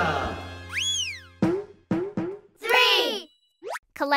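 A cartoon 'boing' sound effect, one glide up and back down in pitch, as children's background music fades out. It is followed by a few short voice-like sounds and a quick rising whoosh near the end.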